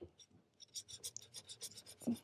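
Metal pen nib scratching across a paper swatch card, laying down ink in a quick run of short strokes that starts about half a second in.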